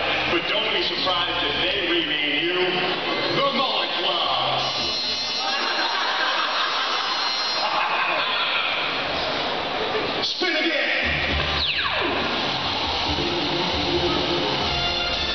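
Arena public-address sound from the big-screen video segments: music under talking voices, echoing through the hall. About two-thirds of the way through, a quick falling swoosh effect sweeps from high to low.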